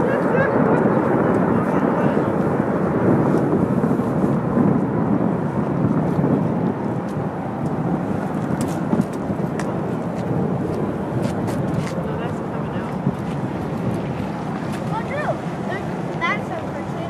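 Jet engine noise from a Boeing 737-800's CFM56 engines as it rolls out along the runway after landing: a steady, broad noise that eases a little in the second half.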